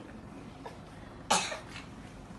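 A single short cough about a second into a lull; otherwise only quiet room sound.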